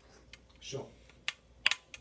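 A few sharp clicks, two of them close together about a second and a half in, with a spoken "So" shortly before them.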